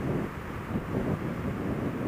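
Suzuki Gladius SFV650 V-twin motorcycle under way at a steady pace, its engine running beneath a steady low rumble of wind on the microphone.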